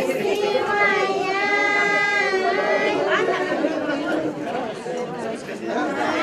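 High-pitched voices singing long, slightly gliding held notes in the first half, over a steady murmur of crowd chatter.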